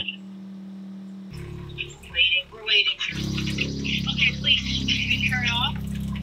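RV fresh water pump running with a steady low hum, louder from about three seconds in, as it pushes bleach sanitizing solution from the siphon through the water lines.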